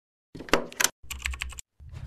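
Sound effect of an animated logo intro: two quick runs of sharp, rapid clicks, then a louder low hit with a rumble starting near the end.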